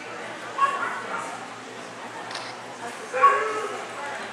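A dog barks twice, short and sharp, about half a second in and again near the end, over a background murmur of voices echoing in a large hall.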